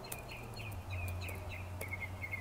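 Faint short bird chirps repeating over a low steady hum, with a few light computer-keyboard clicks as code is typed.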